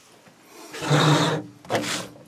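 Plastic blister pack of a Zippo lighter being slid across a tabletop and picked up: a rough scraping rustle lasting under a second, starting about three quarters of a second in, then a shorter scrape near the end.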